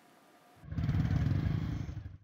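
A short near-silence, then from about half a second in a motorcycle engine running with a loud, low rumble, fading just before the end.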